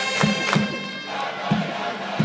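A baseball cheering section's trumpets and drum play a pitcher's cheer song while the crowd of fans chants along. The trumpet notes stop about a second in, leaving the crowd's voices and steady drum beats.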